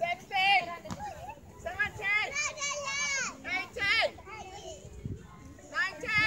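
Several young children calling and shouting in high voices as they play, overlapping one another, with a quieter stretch near the end.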